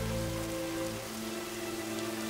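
Steady rain falling, with a soft film score of held notes underneath.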